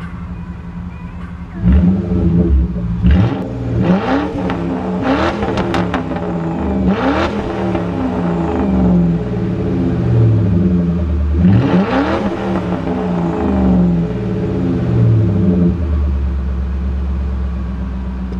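Lincoln Mark VIII's V8, a Cobra long block with B heads, breathing through Flowmaster Flow 44 mufflers, idling and then blipped through a string of quick revs, the biggest about two-thirds of the way through. It settles back to a steady idle near the end.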